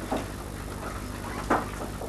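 Quiet room tone under a steady low electrical hum, with two faint brief sounds, one just after the start and one about a second and a half in.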